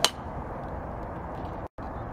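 A golf club striking a ball on a full swing: one sharp, metallic click with a short ring right at the start, over steady outdoor background noise. The sound drops out completely for a moment near the end.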